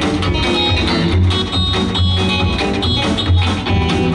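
Live country band in an instrumental break: electric guitar playing lead over upright bass and drums.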